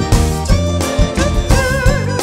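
Live forró band playing: button accordion over a steady zabumba and drum-kit beat. A held note with vibrato comes in near the end.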